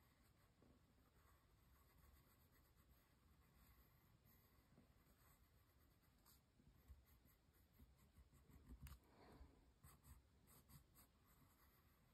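Very faint scratching of a dark pencil on paper as letters are drawn, with a busier run of short strokes about three-quarters of the way through.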